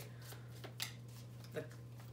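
A deck of tarot cards shuffled by hand: a few brief, soft swishes of card against card, over a steady low hum.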